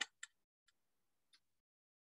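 Near silence with three faint, short clicks from a computer mouse, its scroll wheel turning as a web page scrolls down.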